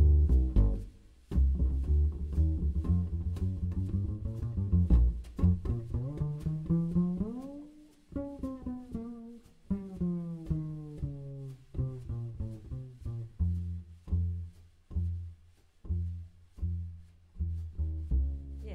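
Upright double bass played pizzicato in a jazz bass solo. Partway through, notes slide up and then back down, and it ends on a string of separate plucked notes about one and a half a second.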